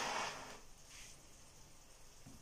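Soft rustling of fingertips rubbing butter into flour, ground almonds and sugar in a dish to make crumble topping. It fades within the first half second to faint room tone.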